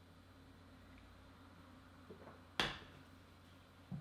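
Near silence while a man drinks beer from a glass, broken by one short sudden sound about two and a half seconds in and a faint knock near the end as the glass is set down on the table.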